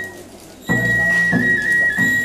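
Festival music: a high, held flute-like note with a few small dips in pitch over a lower, rough droning tone, starting a little under a second in after a short lull.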